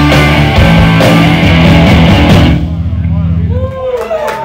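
Live punk rock band (distorted guitar, bass and drums) playing the last bars of a song, which stops about two and a half seconds in, with the final chord ringing out briefly. Audience voices shout as the music ends.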